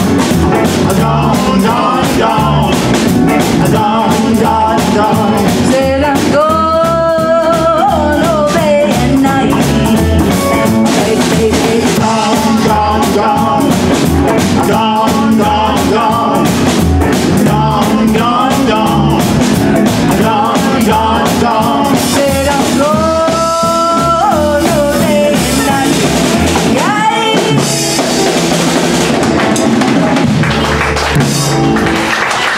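Live band playing a boogie-woogie swing number on upright bass, drum kit and guitar, with long bending notes held twice.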